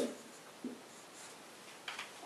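Marker pen faintly squeaking and scraping across a whiteboard in a few short strokes, followed by a short click near the end.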